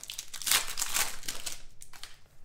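Foil wrapper of a 2018 Rookies & Stars football card pack crinkling in the hands as it is opened: a dense run of crackles that is loudest in the middle and thins out near the end.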